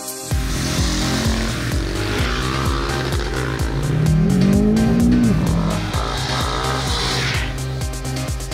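Music with a fast beat and a heavy bass line, over which a single-cylinder supermoto motorcycle engine revs up, its pitch climbing for about a second midway through and then dropping off.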